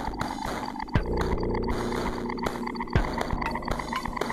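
Modular synthesizer music: a buzzy, rapidly pulsing textured tone from a Make Noise Echophon echo with a Belgrad filter in its feedback loop. A deep drum hit falls about every two seconds, twice.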